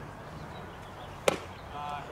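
A baseball bat hits a pitched ball: one sharp crack a little past a second in, with a short ring after it.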